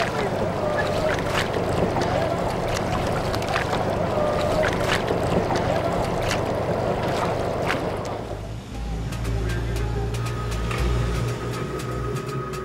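Harbour water ambience around small boats: water lapping and splashing against hulls, with scattered knocks and distant voices calling. About eight seconds in it gives way to a low steady rumble.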